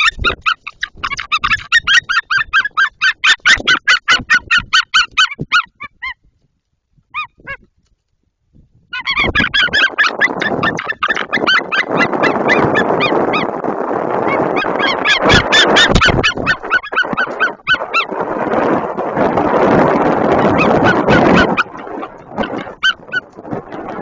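White-tailed eagle calling in fast series of goose-like yelps in alarm as ospreys attack its nest. The calls stop for a few seconds of near silence about six seconds in, then start again over a loud rushing noise from the bird close against the microphone.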